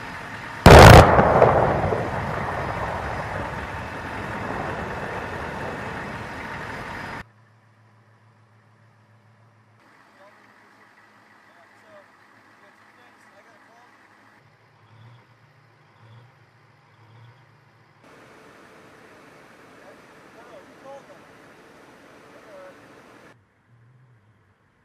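An M1A1 Abrams tank's 120 mm main gun firing once, about a second in: a single very loud blast followed by a long rolling echo that dies away over several seconds, then cuts off abruptly.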